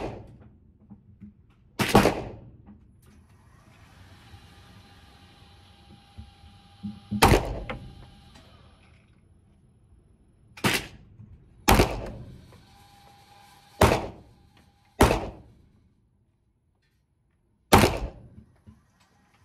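Beretta 92 FS 9mm pistol fired seven single shots, spaced irregularly from about one to five seconds apart, each with a short echo off the walls of the indoor range.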